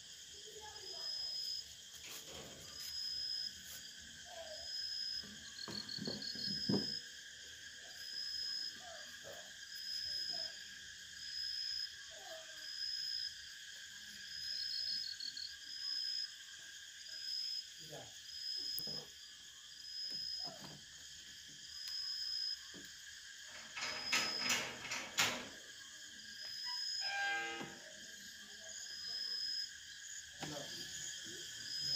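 Crickets chirping: a short high chirp repeating about once a second over a steady high insect drone. A few knocks and a brief clatter late on come from the telescope being handled.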